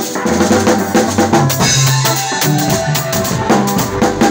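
Drum kit played with sticks: snare and cymbal hits in a steady groove, over a song with a bass line and melody.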